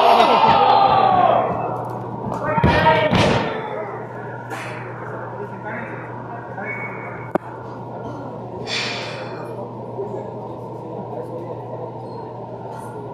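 Shouting voices in a large gym hall and a heavy thud about three seconds in, as of a wrestler's body slamming onto the ring mat; after that, quieter room noise with a single sharp click in the middle.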